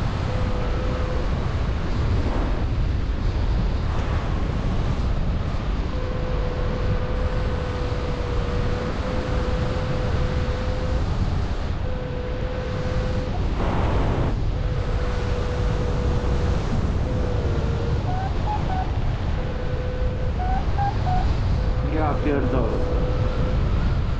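Airflow rushing and buffeting over the microphone of a paraglider in flight, a steady heavy rumble with a brief surge about two-thirds of the way through. A thin steady tone runs under it, dropping out and returning several times, with a few short higher chirps near the end.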